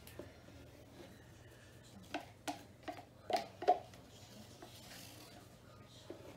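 A wooden craft stick working paint at the edge of a stretched canvas, giving about five quick light knocks in a row between two and four seconds in, over quiet room tone.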